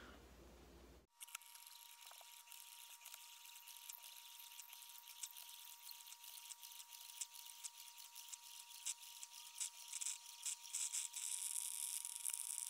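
Small 4-cup Betty Crocker drip coffee maker heating and brewing, heard fast-forwarded: a faint, high, crackly hiss full of rapid small clicks with a thin steady tone, starting about a second in and growing louder and busier toward the end as the brew gets going.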